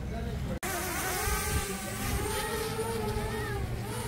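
Quadcopter drone flying overhead, its propellers giving a buzzing whine that drifts up and down in pitch as it manoeuvres; it begins after an abrupt cut about half a second in.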